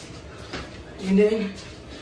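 A man's short wordless vocal sound, about half a second long and about a second in, over quiet room noise.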